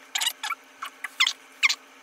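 Large makeup powder brush working loose powder, dabbed in the pot and swept over the face in about six short strokes, each a quick scratchy swish of the bristles.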